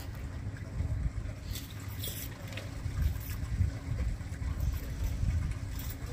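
Outdoor ambience: a steady, uneven low rumble with a faint hum, and a few faint clicks between about one and a half and three and a half seconds in.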